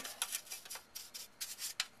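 A brush scrubbing the dirty plastic underside of a Rainbow E-Series power nozzle in quick, short strokes, about five a second, loosening the caked-on dirt.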